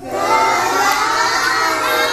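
A class of young children calling out praise together in chorus, many overlapping voices drawn out at length.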